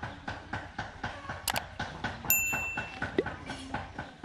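A sharp mouse click and then a single bright bell ding, the sound effect of an on-screen like/subscribe/notification-bell animation. Under it runs a regular patter of short clicks, in the rhythm of walking footsteps.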